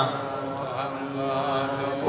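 A man's chanted Arabic recitation through a public-address microphone. After a louder phrase it drops to a quieter, held, steady-pitched note.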